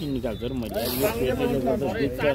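People talking: voices overlapping, with no words clear enough to make out.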